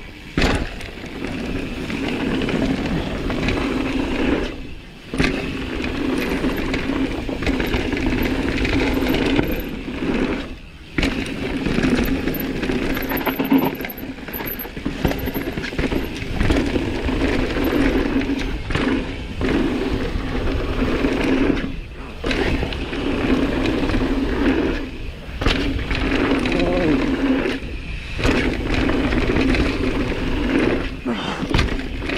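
Mountain bike descending a rough gravel trail: tyres rattling over loose stones and the steady buzz of the rear freehub ratchet while coasting. The buzz and rattle drop out briefly several times.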